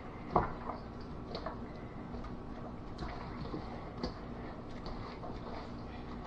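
A gloved hand tossing seasoned raw chicken pieces in a stainless steel bowl: faint wet squishes and a few soft knocks, the loudest about half a second in.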